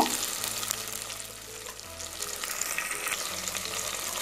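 Sliced shallots, garlic and curry leaves frying in hot oil in a pan, with a steady sizzle while a spatula stirs them.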